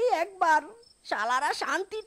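A high-pitched cartoon character's voice talking in quick phrases, with a brief pause partway through. A faint, steady cricket chirr runs underneath.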